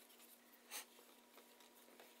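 Near silence with faint rustling of 550 paracord being handled and tied over a sheet of paper, with one brief scrape about three quarters of a second in.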